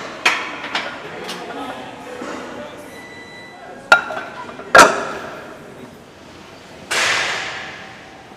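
Loaded barbell and red Eleiko calibrated steel plates clanking at a squat rack: a few light knocks, then two sharp loud clanks about a second apart near the middle. Near the end comes a burst of hiss that fades over about a second.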